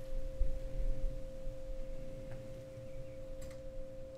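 Background ambient music: a steady held drone of a few pure tones, with a low rumble underneath.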